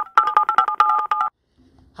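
Logo jingle made of a quick run of short two-tone beeps like telephone keypad dialing tones, stopping just over a second in. A faint low hum follows near the end.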